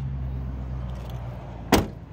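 A car door being shut: one sharp clunk about 1.7 s in, over a low steady background rumble.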